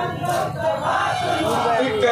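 A group of men chanting a marsiya, a sung lament for Hazrat Husain, their voices together.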